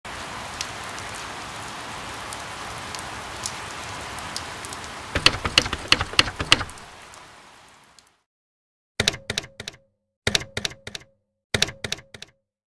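Steady rain with scattered drips, then a run of louder, sharper drops before it fades out. After a moment of silence come three short clusters of quick, sharp clicks.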